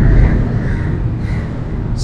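Steady outdoor background noise with a low rumble, loudest in the first half second.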